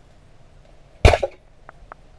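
An 85 cm rubber-band speargun (arbalete) fired underwater: one sharp snap about a second in as the bands release and launch the shaft, over in a fraction of a second.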